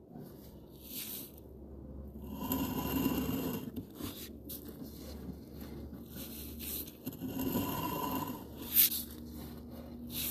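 Sewer inspection camera and its push cable being drawn back through the drain pipe: irregular scraping and rubbing that swells twice, over a steady low hum, with a sharp click near the end.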